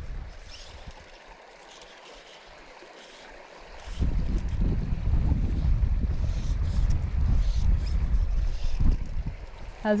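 A gust of wind buffets the microphone from about four seconds in, a loud, uneven low rumble lasting about five seconds. Under it is the faint, steady rush of a shallow stream.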